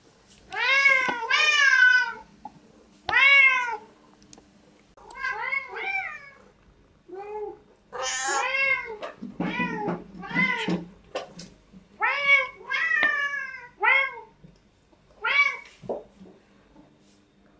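Domestic cats meowing over and over, about fifteen short meows in quick runs with brief pauses, each rising and then falling in pitch. They are begging meows, asking for the cheese being offered from the table.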